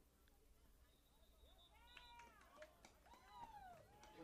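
Near silence, with a few faint, high-pitched distant shouts from the football field in the second half.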